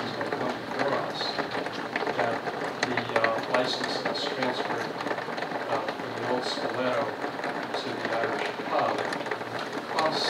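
Indistinct talking: voices speaking in a meeting room, too unclear for the words to be made out.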